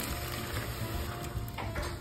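Tarantella background music playing, over the trickle of red wine being poured from a glass jug into a pot of tomato sauce.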